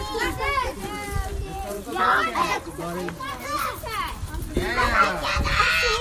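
A group of children shouting and chattering over one another, their high voices overlapping throughout.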